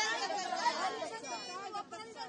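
A group of women shouting protest slogans together, their voices overlapping, starting abruptly after a brief gap.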